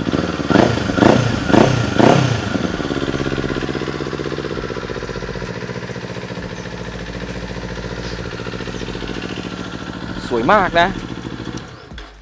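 Kawasaki Z400SE's 399 cc parallel-twin engine, through an aftermarket slip-on exhaust, revved in about four quick throttle blips over the first two seconds or so, then settling into a steady idle.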